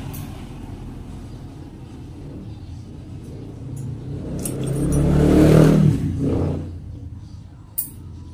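A motor vehicle passing by, its engine growing louder to a peak about five to six seconds in and then fading away. A few sharp clicks from stainless nail nippers cutting a toenail.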